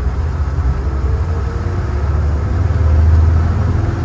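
Volvo Penta IPS diesel engines of a motor yacht throttling up under joystick control: a low engine drone that grows louder and a little higher about three seconds in, heard from the enclosed helm.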